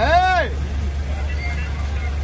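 A man's voice calls out once, its pitch rising then falling, over a steady low rumble of vehicle engine noise.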